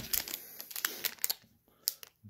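Light crinkling and a few sharp clicks of a clear plastic sleeve being handled. The sound goes quiet for a moment shortly before a last click at the end.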